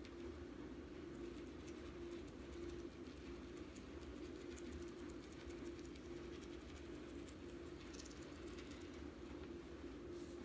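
Faint, rapid clicking and crackling of a rotary cutter's blade rolling through adhesive plastic rhinestone wrap on a cutting mat, over a steady low hum.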